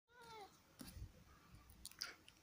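A cat gives one short meow that falls in pitch, followed by a few soft knocks and clicks.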